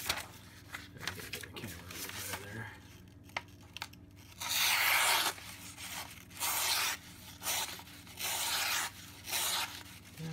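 Ganzo G7531-CF folding knife slicing through a sheet of printer paper: four slicing strokes about a second apart in the second half, the first the longest. It is a paper-cut test of the knife's out-of-the-box edge.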